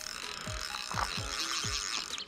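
Fishing reel's drag ratcheting in a fast continuous buzz as a hooked sturgeon runs and pulls line from the spool. Background music with a steady beat plays underneath.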